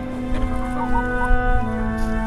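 Hens clucking a few times about a second in, over slow background music with long held notes.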